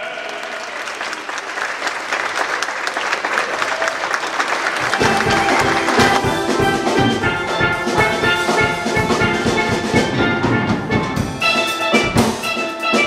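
Audience applauding for the first few seconds, then a steel drum band playing a rhythmic tune.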